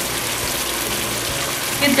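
Chicken pieces cooking in oil and yogurt in a pot on the stove: a steady sizzling hiss.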